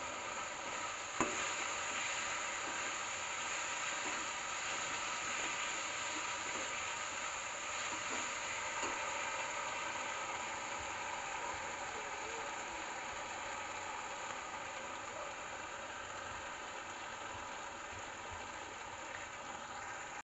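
Soya chunks in a thick sauce sizzling steadily in a steel kadai on a gas burner as they are stirred with a metal spatula, with a single sharp click about a second in. The sizzle slowly eases toward the end.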